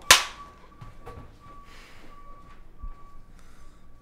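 A film slate clapperboard snapped shut once, a single sharp clap that marks the take for syncing sound and picture. After it there is only quiet room tone with a faint steady thin whine.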